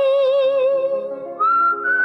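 Hindi film song: a female voice holds one long sung note with a slight vibrato over soft backing chords, and about one and a half seconds in a high, thin, whistle-like held tone takes over.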